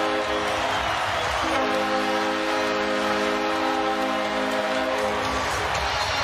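Arena goal horn blowing over a cheering crowd, sounded for a home-team goal. The horn breaks off briefly about a second and a half in, then blows again and stops shortly before the end.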